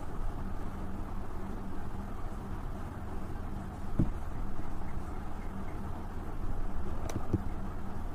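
Steady low background rumble with a few short, sharp clicks about four seconds in and again near the end; the last clicks are a computer mouse being right-clicked.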